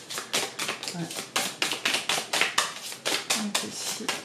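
A deck of oracle cards being shuffled by hand: a rapid, even run of crisp card slaps and clicks, about seven a second.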